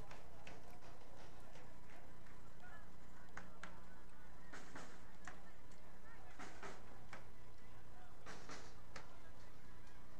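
Faint ambience of a soccer match heard through the broadcast feed: a steady low hum under scattered short, sharp sounds and a faint distant voice.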